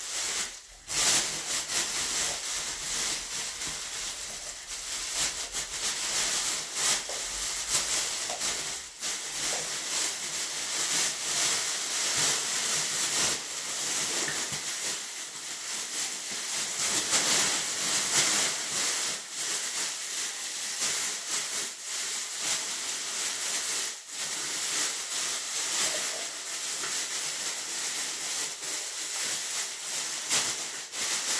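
Thin plastic shopping bag crinkling and rustling without a break as gloved hands handle it, with many small irregular crackles.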